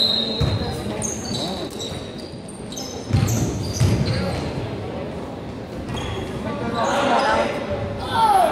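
Basketball bouncing a few times on a gym floor, with short high sneaker squeaks, in a large echoing gym. Voices shout near the end.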